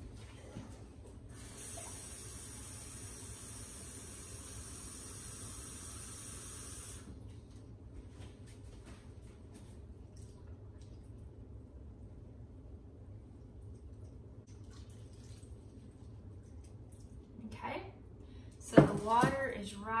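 Kitchen tap running water into a glass measuring cup for about five seconds, a steady hiss that stops suddenly. It is followed by faint sounds of the water being poured from the cup over rough beeswax in a crock pot.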